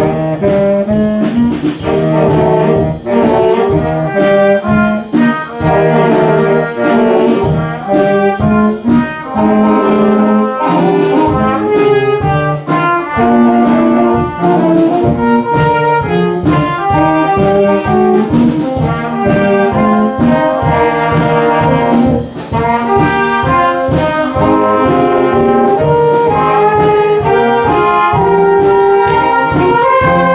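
A school orchestra of strings and saxophones playing a piece with a steady beat, loud and continuous.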